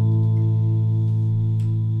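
Gibson Les Paul electric guitar chord held and ringing out, fading slowly, with one of its notes wavering in a steady pulse.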